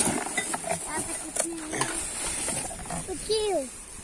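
A cardboard box full of discarded packaging being handled and lifted: scattered rustles and light knocks of cardboard and trash, with faint voices in the background.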